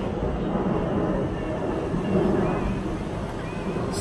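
Steady low engine rumble of outdoor traffic, with faint voices behind it.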